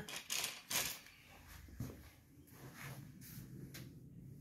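A few faint, short scuffs in the first second and a click a little before the middle, most likely footsteps on a concrete floor, then quiet room tone with a low hum.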